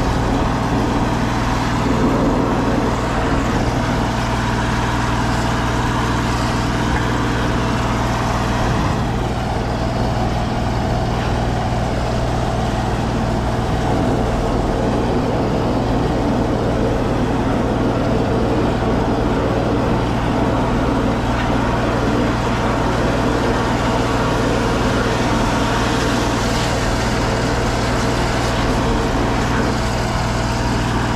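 Combination sewer-cleaning (WUKO) truck running steadily, its engine driving the high-pressure water pump that feeds the jetting hose in the drain.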